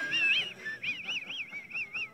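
A man's high-pitched, squeaky laughter: a rising, wheezing note at the start, then from about a second in a rapid run of short rising-and-falling squeals, about six a second.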